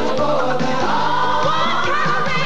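Commercial jingle: a group of voices singing over a band, holding a long note that rises slightly near the end.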